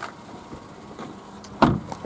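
A Vauxhall Adam's door being shut: a single thump about one and a half seconds in, over low steady background noise.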